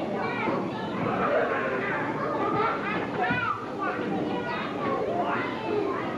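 Many children's voices talking over one another at once, a steady hubbub of chatter with no single speaker standing out.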